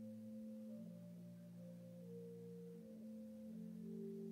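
Quiet organ prelude: soft, pure-toned held chords that move to new notes every second or so.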